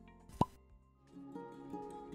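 Background music with a short, sudden pop sound effect about half a second in that glides quickly upward in pitch. After a brief lull, light music with plucked notes starts about a second in.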